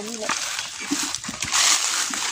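Hands scraping and digging through dry leaf litter and loose soil, a rustling, scratching noise that gets louder near the end.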